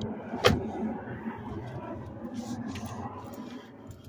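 A single sharp knock about half a second in, then rustling and shuffling handling noise as someone leans through a car's open rear door into the back seat.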